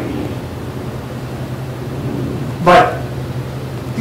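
A steady low room hum during a pause in speech, with one brief voice sound about three seconds in.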